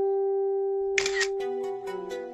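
Phone camera shutter click for a selfie, a short sharp burst about a second in. It comes over a long held background-music note that is fading out, and plucked-string music starts just after.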